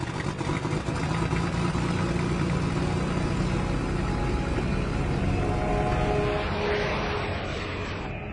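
Aircraft engine noise, a steady rumble that eases off slightly near the end.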